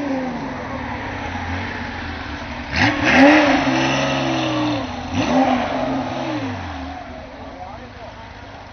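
Air-cooled flat-six of a classic Porsche 911 rally car pulling away and passing close by, with two throttle blips about three and five seconds in, the first the loudest, then fading as it moves off.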